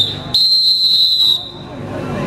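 Referee's whistle in a kabaddi match: a short toot, then one shrill blast of about a second, signalling the end of a raid as a point is awarded.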